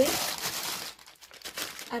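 Brown paper grocery bag rustling and crinkling as a hand handles it. The crinkling is loudest in the first second, and a few softer rustles come near the end.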